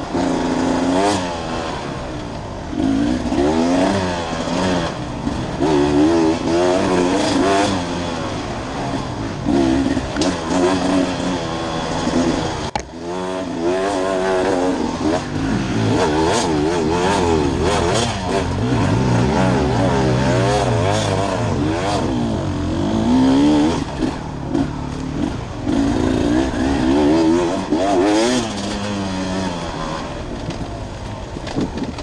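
Dirt bike engine being ridden hard off-road, its pitch rising and falling constantly as the throttle is worked on and off every second or so. A brief drop in the engine sound about halfway through, with scattered clicks and knocks throughout.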